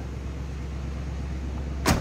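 1985 Oldsmobile Delta 88's engine idling smoothly, a little high on the choke after a cold start. Near the end, one sharp slam as the car's door is shut.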